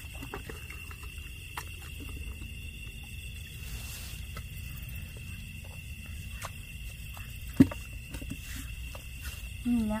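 Hands feeling through shallow muddy water make small splashes and squelches over a steady high-pitched night-insect drone. A single sharp knock about seven and a half seconds in is the loudest sound.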